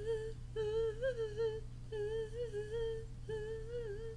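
A woman humming a tune with her mouth closed, in short melodic phrases with brief breaks between them, over a low steady background hum.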